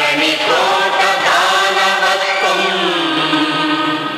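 Loud singing of a chanted verse: a voice holding long, wavering notes over musical accompaniment.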